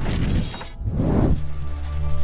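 Video transition sound effects: a sudden noisy hit that dies away within a second, then a second low swell. About a second and a half in, an outro music bed of steady sustained notes over a low bass takes over.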